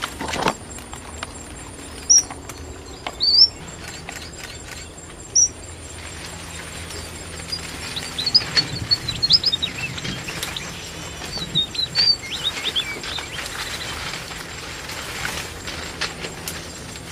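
Red avadavats (strawberry finches) calling: a few single high chirps in the first few seconds, then a run of quick, high twittering chirps from about eight to thirteen seconds in.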